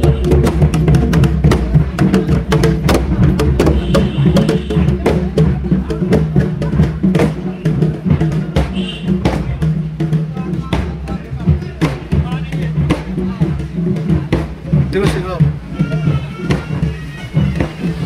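Large carried drums beaten in a loud, uneven processional rhythm over a steady low drone, with a few short high piping notes about four and nine seconds in.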